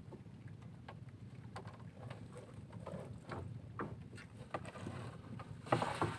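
Wet mesh of a shrimp trap being hauled by hand over the side of a wooden outrigger boat: scattered rustles and light knocks over a low steady rumble of wind and water, with a louder clatter near the end.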